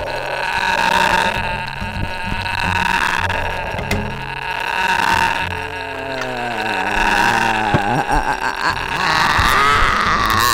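Free improvised ensemble music: several sustained tones layered into a dense drone, with a wavering pitched sound gliding downward from about five and a half seconds in and a few sharp clicks near eight seconds.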